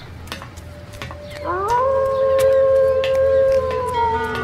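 A wolf howl that rises about a second and a half in, holds one long steady note and dips slightly as it fades, over faint scattered clicks.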